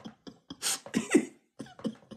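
A woman laughing in a few short, breathy bursts.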